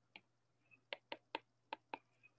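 Stylus tip tapping on an iPad's glass screen while handwriting, about six faint sharp clicks, most of them in the second half.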